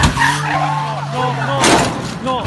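Peugeot 208 rally car sliding past sideways, its tyres skidding and its engine holding a steady note, with spectators exclaiming. Near the end there is a loud crash as the car goes off the road into the bank, and the engine note stops.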